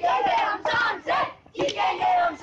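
A group of children shouting a slogan together in short, loud calls, with a brief gap a little past the middle.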